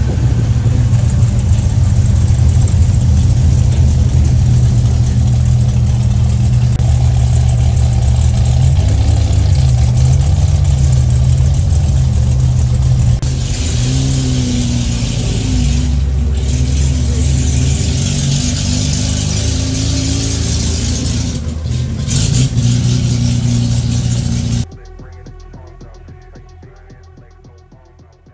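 Car engine running loudly and revving, its pitch rising and falling in places. A rush of noise joins about halfway through, and the sound cuts off suddenly just before the end.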